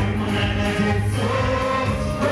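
Live gospel worship music: a choir of voices singing over a steady, strong low bass accompaniment.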